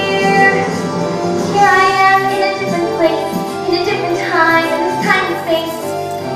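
A young female voice singing a musical-theatre number over musical accompaniment, with sliding, held sung notes.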